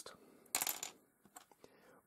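A small plastic Mega Construx piece set down on a wooden desk, a short clatter of clicks about half a second in, then a couple of faint ticks as another plastic piece is picked up.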